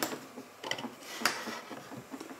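Faint handling sounds of a carved wooden board being lifted off a CNC machine bed from its hold-down clamps, with a couple of light clicks and knocks.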